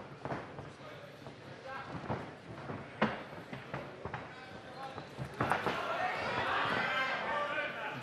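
Cage-side sound of a live MMA bout: voices from the crowd and corners shouting, building from a little over five seconds in, over a few sharp thuds from the fighters, the loudest about three seconds in.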